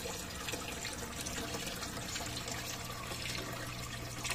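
Water running and trickling steadily, with a faint low hum under it.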